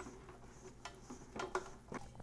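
Dough being mixed by hand in a stainless steel Instant Pot inner bowl: a few faint knocks and scrapes against the metal, about a second in and again near the end.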